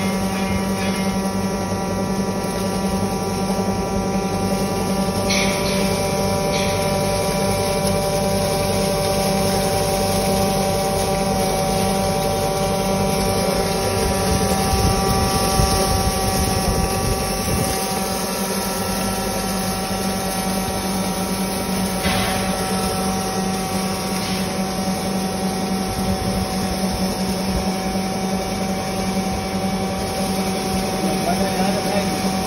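Punjab Engineering domestic aata chakki (electric flour mill) running and grinding grain, a steady hum with several steady tones held throughout and a couple of brief clicks.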